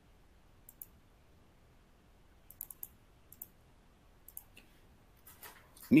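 A few faint, short clicks scattered over quiet room tone during a pause in speech.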